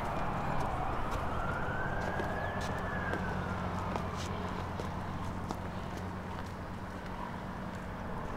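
A siren wailing, its pitch rising over the first few seconds and then falling away, over a steady low hum, with scattered light ticks.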